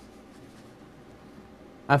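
A pause in a man's talk: faint steady room tone, then his voice starts again near the end.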